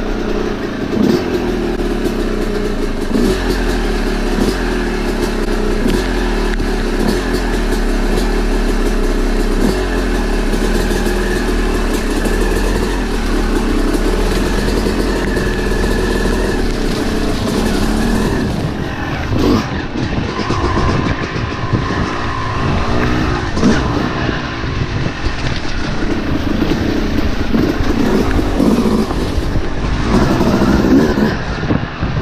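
Yamaha YZ250 two-stroke dirt bike engine running under way, heard from a camera on the bike. It holds a steady pitch for most of the time, then its pitch rises and falls with the throttle from about two-thirds of the way in, with frequent knocks and rattles over the rough trail.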